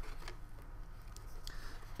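Faint handling clicks of alligator clips being clamped onto copper-tape tabs on a paper poster, over a steady low electrical hum.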